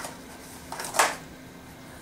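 Hands handling cardboard packaging and a plastic egg-shaped remote transmitter as it is taken out, with a few soft rustles and one sharp click about a second in.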